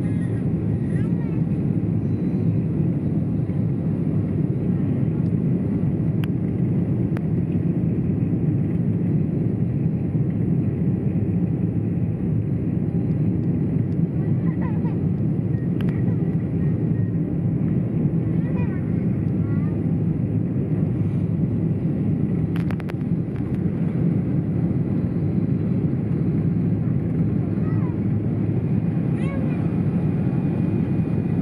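Steady cabin noise of an Emirates airliner on final approach, heard from inside the cabin: the low rumble of engines and airflow holds at one level throughout. Faint voices can be heard under it.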